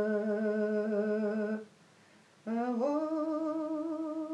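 A woman's solo voice singing a drawn-out Russian folk song (protyazhnaya pesnya), unaccompanied: one long held note, a pause of about a second, then a second long note that rises slightly and holds.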